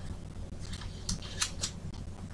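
Thin Bible pages rustling as they are handled and turned: a few short, crisp rustles in the second half.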